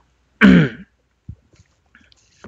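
A man clears his throat once, briefly, followed by a few faint clicks.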